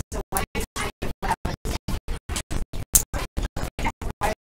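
Choppy, stuttering audio: the room sound cuts in and out about seven to eight times a second, leaving short even bursts with dead silence between them, a recording dropout glitch.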